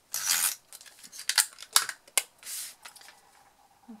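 Adhesive tape runner drawn across the back of a small piece of patterned paper in a short rasping pass, then a few sharp clicks and paper rustles as the piece is handled and pressed onto the card box, with a second brief rasp just past the middle.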